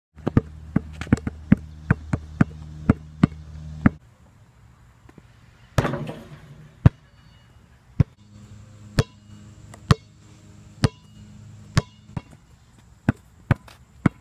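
Basketball bouncing on an asphalt court: quick bounces about three a second at first, then single bounces about a second apart, with one noisier clattering hit about six seconds in.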